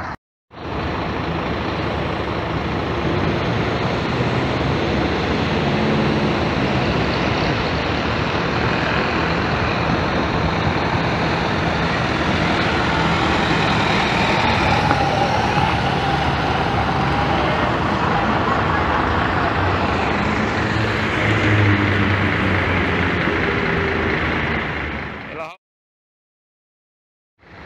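Diesel bus engine running as a school bus drives past close by, with a steady rush of engine and road noise that swells a little near the end.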